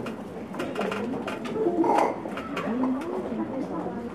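Indistinct chatter of several people talking at once, with no single clear voice.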